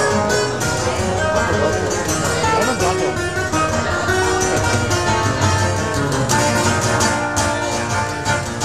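Solo steel-string acoustic guitar played fast, picked notes running quickly over a steady bass line in a bluegrass-style instrumental.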